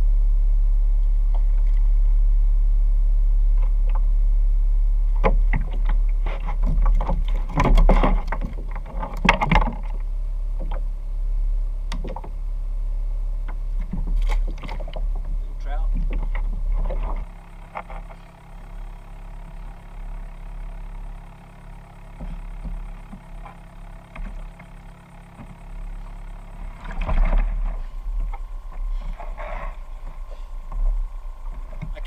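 Steady wind rumble on the microphone of a kayak-mounted action camera, with splashing and sharp knocks from a fish being fought and landed beside the kayak, loudest about eight to ten seconds in. Quieter water and handling sounds follow after about seventeen seconds.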